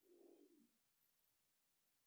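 Near silence: room tone, with one faint, short, low sound in the first half-second.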